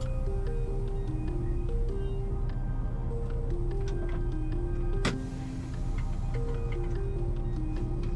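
Background music: a stepping melody of held notes over a steady bass, with light ticking clicks. About five seconds in there is a single sharp hit, and the music dips briefly right after it.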